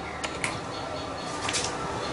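A small hand tool clicking and scraping on a short length of insulated electrical wire as its ends are stripped: two sharp clicks near the start, then a brief rasp about one and a half seconds in.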